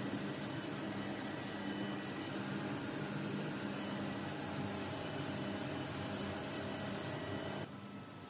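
Compressed-air paint spray gun hissing steadily over the hum of the paint booth's ventilation. The noise drops suddenly near the end.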